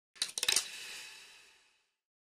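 Short sound-effect sting for an animated logo end card: a quick run of sharp clicks and hits in the first half-second, then a ringing tail that fades out over about a second.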